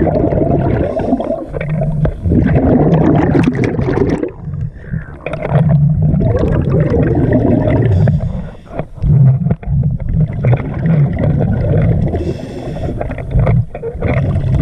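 Underwater bubbling and gurgling from a scuba diver's regulator exhaust, coming in long surges with brief lulls in between.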